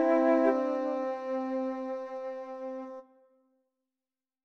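Chamber trio of flute, clarinet and bassoon holding a sustained closing chord, one inner note moving half a second in, then dying away and cutting off about three seconds in at the end of a movement.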